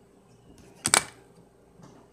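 Handling noise: one sharp click, like hard plastic snapping, just before one second in, then a few faint taps near the end.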